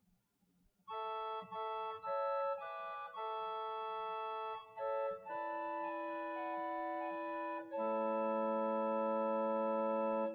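The four-foot Quintadena stop of the 1898 Hope-Jones organ at Pilton, sampled and played on a virtual pipe organ: a short passage of sustained notes and chords starting about a second in and ending on a long held chord. Its tone carries a prominent twelfth.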